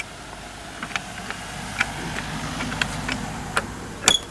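A car driving past on a narrow lane: engine and tyre noise swell to a peak about three seconds in, then begin to fade, with a few small clicks scattered through it.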